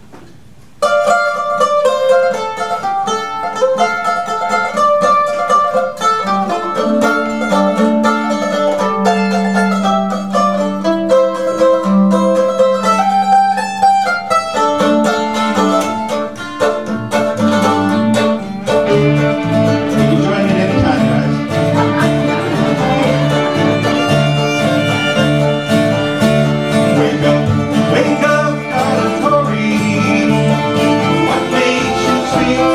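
An old-time string band starts a tune about a second in, with plucked strings and fiddle on the melody. A low bass line from the upright bass comes in just past halfway and fills out the sound.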